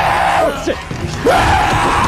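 Loud yelling: two long cries, one at the start and another about a second in, over film action music.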